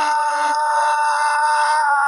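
Isolated male singing voice holding one long, steady note.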